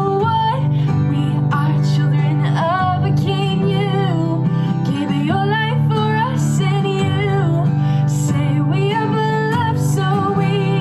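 A young woman singing while strumming an acoustic guitar, a steady strum of C, D and G chords under a sung melody that rises and falls.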